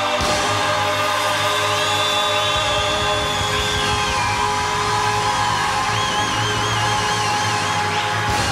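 Live band holding a long, loud final chord, with drums and cymbals rolling beneath and wavering high tones above.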